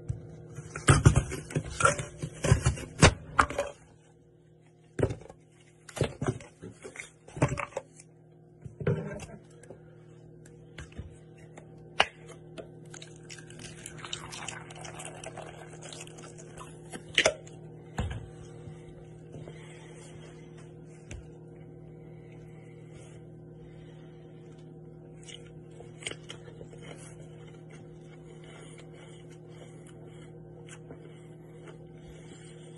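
Apple being cut with an apple slicer: a run of sharp knocks and crunches in the first few seconds, then scattered single clicks and knocks over a steady low hum.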